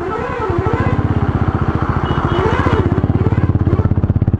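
Motorcycle engine with an aftermarket exhaust running at low speed, its exhaust pulsing rapidly and evenly, growing a little louder about half a second in.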